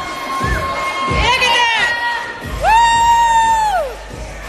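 People shouting and cheering in a gym, ending with one long held shout about two and a half seconds in.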